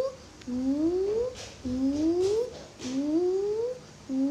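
A voice making repeated rising 'ooh' whoops, each sliding up in pitch for under a second, about three times, with faint clicks in between.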